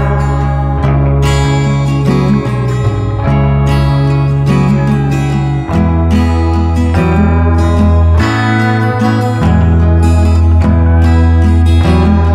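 Background music with guitar and a strong bass line, running steadily.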